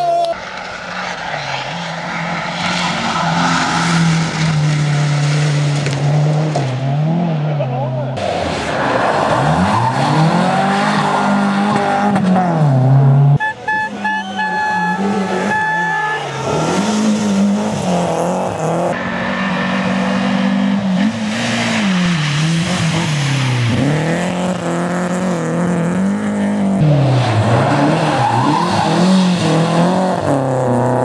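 Small hatchback rally cars' engines revving hard through corners, the pitch climbing and dropping again every couple of seconds with throttle and gear changes, in several separate passes cut together.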